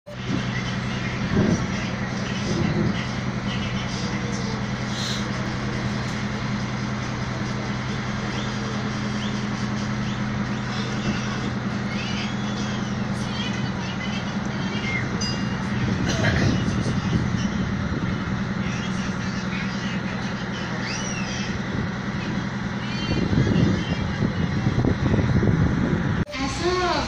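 A houseboat's engine running steadily, a low even hum under water and wind noise; near the end the hum gives way to louder rumbling.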